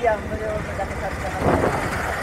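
Low steady rumble of motorcycle engines riding slowly in street traffic, with snatches of a man's voice.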